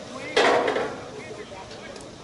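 A sudden knock or clatter about half a second in, fading over about half a second, with faint talk around it.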